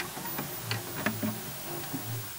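Glitch-static sound effect: a steady hiss of TV-style static broken by irregular sharp clicks and crackles, with a few short low electrical buzzes.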